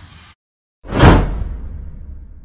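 Intro whoosh sound effect: a rushing swell with a deep boom about a second in, then fading away. At the start the tail of an earlier whoosh dies out into a brief silence.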